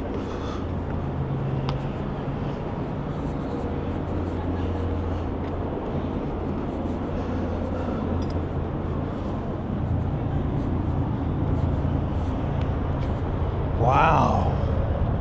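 Steady low hum of road traffic and idling vehicles, with a continuous hiss over it.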